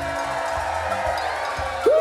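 Live band music playing over a steady low beat, with one long held note. A faint crowd cheers, and a loud swooping note or whoop comes near the end.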